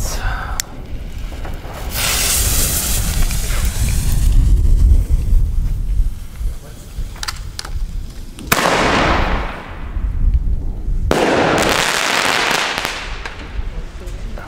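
Weco Fantastic 4 single-shot firework mortar tube going off: a sudden loud report about eight and a half seconds in and a second loud report about two and a half seconds later, each trailing off over a second or two, as the shell is launched and then bursts.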